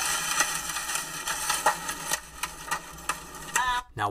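Heavy rain and wind-driven debris pelting a moving car, heard from inside the cabin as the car drives through the hook echo of a tornadic supercell: a steady rush of rain, wind and road noise with irregular sharp hits on the body and glass. It cuts off just before the end.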